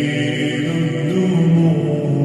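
A voice chanting in long, drawn-out melodic notes that bend slowly in pitch.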